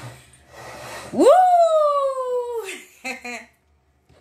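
A long, high vocal note that rises sharply and then slides slowly down for about a second and a half, after rustling close to the microphone. A short voiced sound follows.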